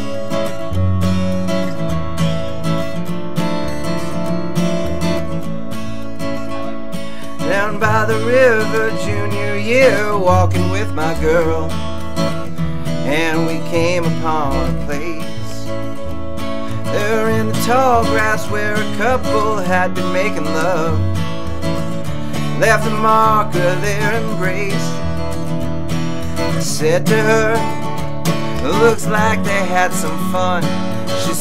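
Country-folk instrumental break: acoustic guitar strumming over plucked upright bass notes, joined about seven or eight seconds in by a neck-rack harmonica playing wavering, bending phrases.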